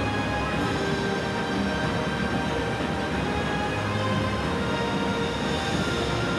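Background area music made of long held notes, over a steady low hum of open-air ambience.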